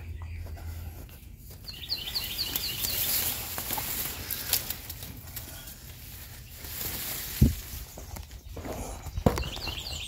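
Footsteps and leafy branches brushing against the phone as it is pushed through a bush, with a quick run of high chirps about two seconds in and a sharp thump about seven seconds in.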